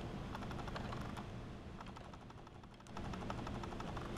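Faint, rapid crackling ticks from a homemade transistor-driven EMP coil circuit running on batteries. The ticking thins and softens a little past halfway, then picks up again about three seconds in.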